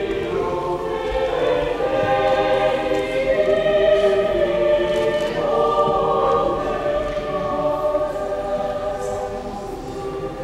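A choir singing sustained sacred chant or a hymn in several voices, echoing in a large stone church.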